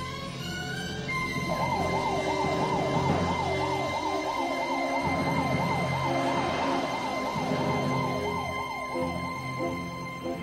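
Ambulance siren in a fast yelp, sweeping up and down about three times a second. It starts a second or so in and fades out near the end, over sustained orchestral background music.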